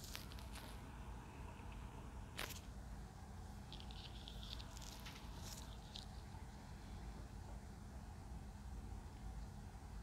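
Faint wet squelching and rustling of plastic-gloved hands mixing seasoned raw chicken pieces in a glass bowl, with a few sharp clicks and a patch of crackling about four to six seconds in, over a low steady hum.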